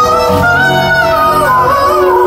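A song performed live: a man sings one long, gently bending melodic line over the band, recorded loud from among the concert audience.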